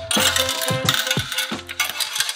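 Loose coins rattling and clinking inside a gumball machine's base as it is handled and tilted, a quick jumble of many small metallic clicks, over background music.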